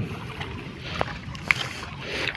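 Shallow pond water sloshing around a man wading and groping by hand for fish, with two sharp little clicks or splashes, about one and one and a half seconds in.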